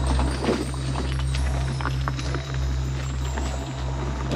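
Electric mobility scooter running along a dirt forest trail: a steady low motor hum, with scattered small clicks and crackles from the tyres rolling over leaf litter.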